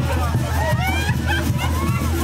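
A crowd of onlookers chattering and calling out over music with a steady low bass line.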